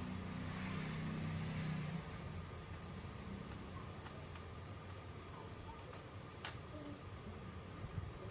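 A motor vehicle passing nearby, its engine a low hum that fades out about two seconds in. After that come a series of light, sharp clicks of coins being handled and stacked on a table.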